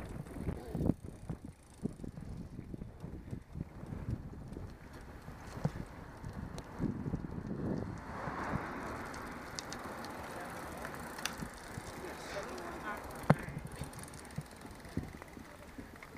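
Road bicycle riding on asphalt heard from the rider's own camera: wind rushing over the microphone with tyre and road rumble. Scattered knocks and rattles, with one sharp click about three-quarters of the way through.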